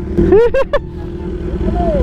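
Kawasaki ZX-10R inline-four engine idling steadily, with a short burst of a voice about half a second in and another near the end.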